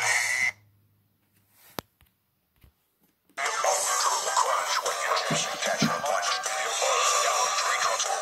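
A short noisy burst at the start, then a near-silent pause broken by a single click. About three and a half seconds in, music starts and carries on.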